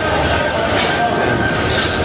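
Busy hall din: a steady rumble of crowd voices, with two short clatters of steel plates and spoons, one about a second in and one near the end.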